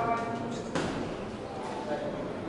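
Shouting voices at a boxing bout in a reverberant sports hall, with one short, sharp noise about three-quarters of a second in.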